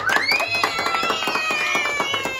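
A group of children clapping and cheering, with one long high-pitched shout that rises at the start and then holds.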